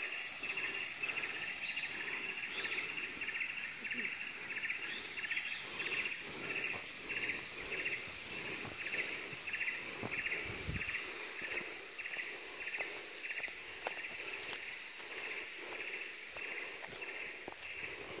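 Forest insects in a steady chorus that pulses about twice a second, over faint footsteps on a dirt path, with a low bump about ten seconds in.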